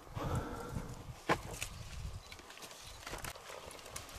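Grapevine leaves rustling and stems and bunches being handled while grapes are picked by hand, with scattered sharp clicks; one sharp click a little over a second in is the loudest.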